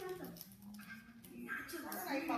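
A quiet, high-pitched voice rising and falling in pitch, with a lull in the middle, not clearly forming words.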